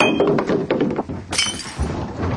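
Glass smashing with a heavy thunk, shards ringing and clinking, then a second glassy crash about a second and a half in. A low car-engine rumble starts near the end.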